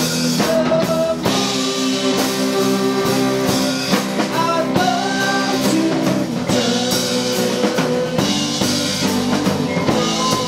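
Live rock band playing: two electric guitars, an electric bass and a drum kit, with bending guitar notes over a steady beat.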